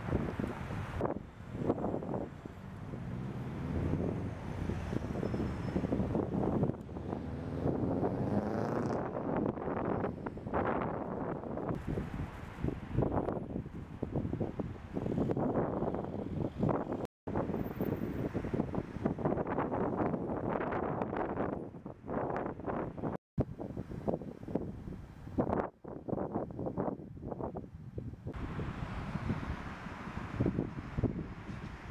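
Wind buffeting the camera microphone in gusts over the noise of street traffic. The sound cuts out completely twice for a moment.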